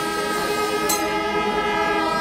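Kombu horns of a Kerala temple melam ensemble holding a steady sustained chord, with a faint sharp stroke about a second in.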